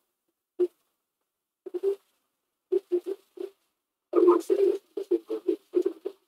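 Background television sound picked up by a headset microphone: fragments of a voice that come through as short, choppy bursts with dead silence between. The microphone's noise suppression and noise gate keep opening and closing on the sound.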